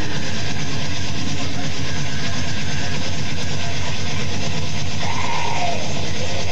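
Live rock band playing loud and fast: guitars over rapid drumming on a drum kit.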